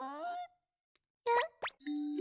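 Cartoon sound effects: a short gliding pitched sound that trails off in the first half second, then a pause, then two quick upward-sliding plop-like pops about a second and a half in.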